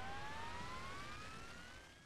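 Jet-engine spool-up whine used as a sound effect: a single tone climbing steadily in pitch, fading away near the end.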